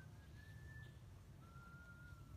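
Faint whistling over near silence: two long, thin, steady whistled notes, each about a second, the second starting about halfway through, over a faint low rumble.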